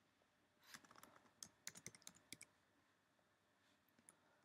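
Faint clicking of computer keyboard keys being typed: a quick run of about a dozen keystrokes starting about half a second in and lasting about two seconds.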